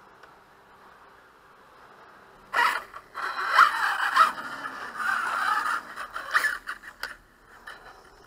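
Arrma Kraton RC truck driving off across a grass lawn: a rough, fluctuating motor whine and tyre noise that starts about two and a half seconds in after a quiet opening, then fades out near the end.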